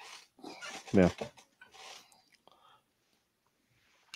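Speech only: a man's short 'yeah' about a second in, with soft breathy sounds around it, then quiet room tone for the last two seconds.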